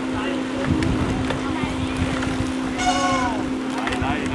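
Outdoor race-side ambience: wind rumbling on the microphone under a steady low hum. A single short call from a spectator's voice, falling in pitch, comes about three seconds in.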